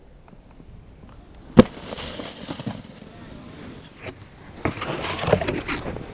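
A snowboard landing with one sharp smack about a second and a half in, followed by the board scraping over hard snow. Near the end, a snowboard sliding and scraping along a wooden log.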